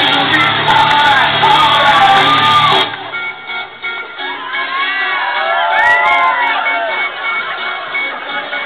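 Loud dance music with strong bass cuts off abruptly about three seconds in. A crowd then shouts and whoops over quieter music.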